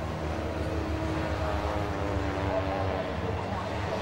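Air-cooled flat-twin engines of a pack of Citroën 2CV racing cars running at a steady drone, heard from a distance as the cars approach, with several engine notes overlapping.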